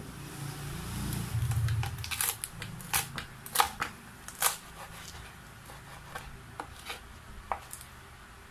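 Kitchen knife chopping pechay stalks on a wooden cutting board: a series of sharp, irregular knocks, the loudest about three to four and a half seconds in and lighter ones later. A low rumble fills the first two seconds.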